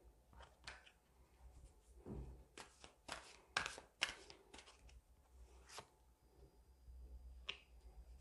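Deck of oracle cards being shuffled by hand: a quiet run of irregular card flicks and swishes, the two sharpest snaps coming about three and a half and four seconds in.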